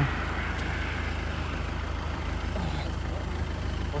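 Steady road noise from car traffic on the road, an even hiss with a constant low rumble underneath.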